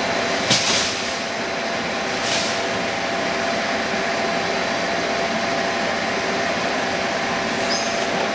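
Steady running noise of HDPE pipe extrusion-line machinery, with a faint steady hum. Two short hisses come about half a second and just over two seconds in.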